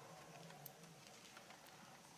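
Near silence: room tone with a few faint small clicks of beads being handled as beading thread is pulled through them.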